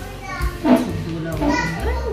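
Voices talking, a child's voice among them, in short phrases.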